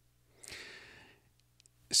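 A person sighing into the microphone: one short, faint, breathy exhale about half a second in, fading out. Speech begins near the end.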